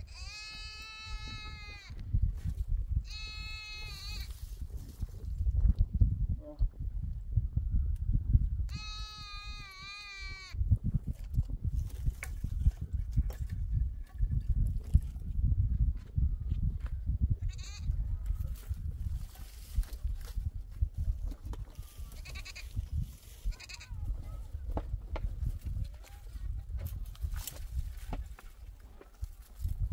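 Livestock bleating: three long, wavering calls, one at the start, one about three seconds in and one about nine seconds in, over a steady low rumble. Faint scattered knocks and rustles follow in the second half.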